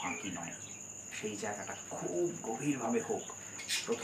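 A cricket trilling in one steady, high, even pitch behind a man's speaking voice, with a short pause in the talk about a second in.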